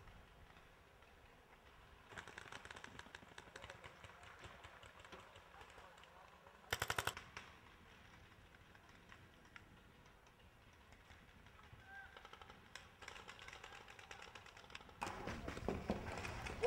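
Paintball markers firing in faint, rapid volleys, with one much louder burst of several quick shots about seven seconds in and more volleys near the end.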